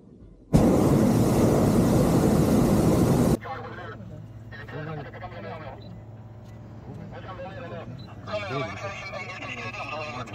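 Hot air balloon's propane burner firing in one loud roar of about three seconds, starting suddenly and cutting off sharply.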